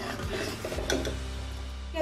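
A metal ladle stirring thick gravy at the boil in a metal kadhai, with a couple of light clicks of the ladle against the pan within the first second.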